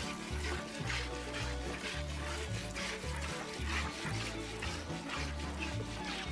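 Hand-milking a cow: short squirts of milk from the teats into a container, about two a second, over background music with a repeating bass line.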